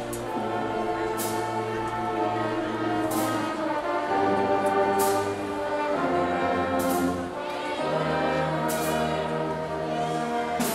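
High school marching band playing a slow piece: saxophones and brass hold long sustained chords over a bass line that moves to a new note every few seconds, with a crash about every two seconds.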